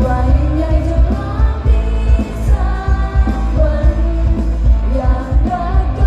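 Live Thai pop song: singing over a band, with heavy bass and a steady drum beat, heard through the concert's PA from the crowd.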